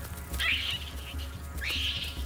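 Background music with a low pulsing beat, with two short, harsh animal cries over it: one about half a second in, the second near the end beginning with a quick upward slide.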